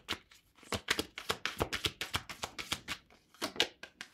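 A deck of oracle cards being shuffled by hand: a quick run of light papery card flicks and slaps, several a second, pausing briefly a little after three seconds.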